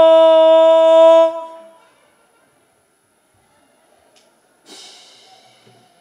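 One long, steady held note lasting about a second and a half, then cutting off to near silence. Faint brass band music enters near the end.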